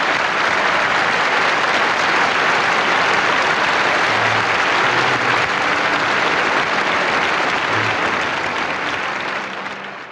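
Theatre audience applauding after an opera aria, a dense, steady clapping that fades out near the end.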